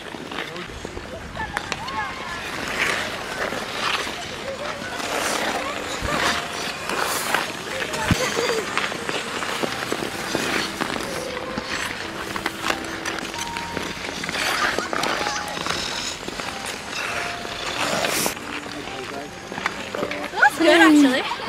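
Figure skate blades gliding and scraping across outdoor ice in irregular strokes, with faint voices in the background.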